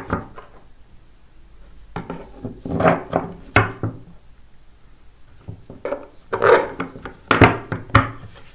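Steel carriage bolts knocking and scraping against a wooden board as they are pushed through its drilled holes and set upright on a table. The clatter comes in two bursts a few seconds apart.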